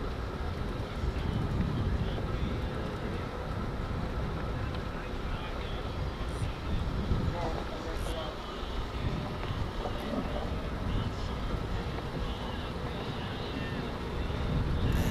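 Wind buffeting the camera microphone as a steady low rumble, with faint voices in the background and a few brief high ticks.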